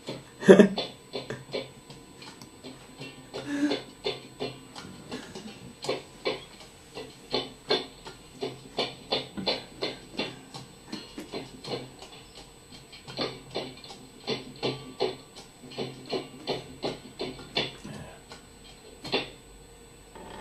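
A recorded music track played back over studio speakers: a run of short, sharp notes, about three to four a second, with a few brief pauses. A laugh comes near the start.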